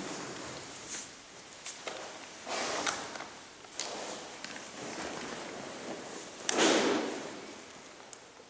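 Scattered clicks and knocks, with two longer rustling bursts: one about two and a half seconds in and a louder one near the end.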